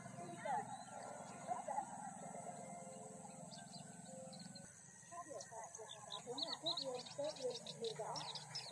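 Faint outdoor field ambience: distant voices murmuring, with birds chirping in quick short calls in the second half.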